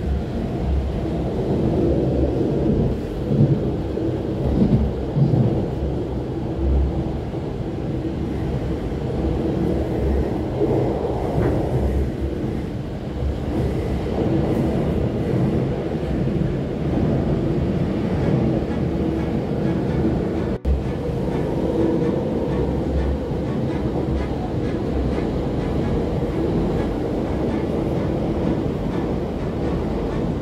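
RER A commuter train running at speed, heard from inside the carriage: a steady low rumble of wheels on track and the train moving. The sound cuts out for an instant about twenty seconds in.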